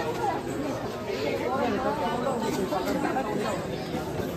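Several people talking at once: steady background chatter of voices, no single speaker standing out.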